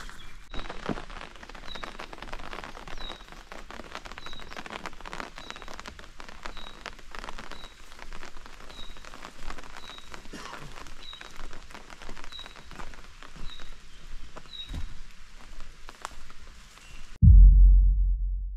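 Rain pattering on a nylon tent fly and the surrounding grass, a dense run of small ticks, with a short high chirp repeating about once a second over it. Near the end the patter cuts off and a loud deep boom begins.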